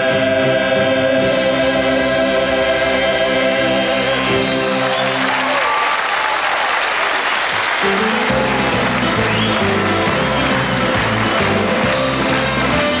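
A male vocal quartet and backing band hold the final chord of a song, which ends about four seconds in. Audience applause takes over, and the band starts playing again under it about eight seconds in.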